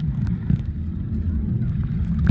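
Muffled river water heard with the camera's microphone underwater: a steady low rumble with a few faint clicks, one about half a second in.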